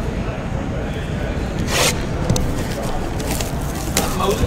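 Plastic shrink wrap being picked at and torn off a sealed trading card box, with one brief tearing rasp just under two seconds in, over steady room noise.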